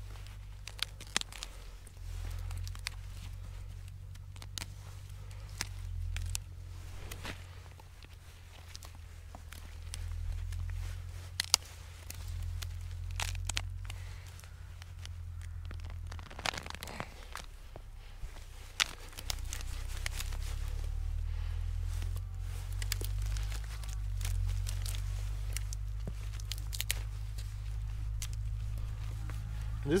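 Jerusalem artichoke tubers and roots being pulled and broken out of loose soil by gloved hands: scattered snaps, crackles and rustles of roots tearing and soil crumbling, over a low rumble.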